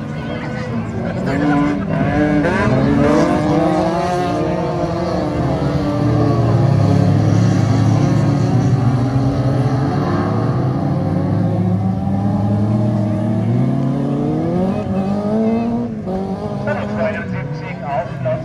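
Engines of several modified stock cars, up to 1800 cc, revving and accelerating as the pack races past on a dirt track. The pitches rise and fall as drivers work the throttle, loudest in the middle.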